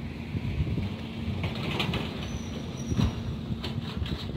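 Wind buffeting the microphone as a steady low rumble, with a short knock about three seconds in.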